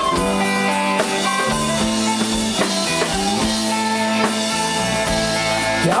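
Live folk band playing an instrumental passage: guitar and drums under long held notes, with a voice coming in to sing at the very end.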